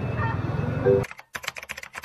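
Rapid, irregular computer-keyboard typing clicks that start abruptly about a second in, after a faint tail of background sound.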